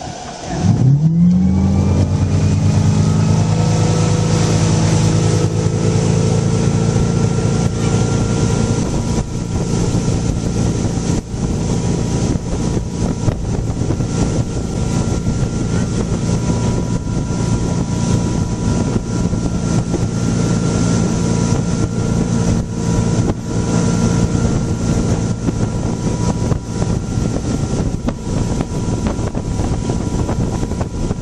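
Ski boat's engine opening up hard about a second in, its pitch climbing quickly as it pulls a water skier up out of the water, then holding a steady high pitch. Over the second half the rush of spray, wake and wind on the microphone covers the engine.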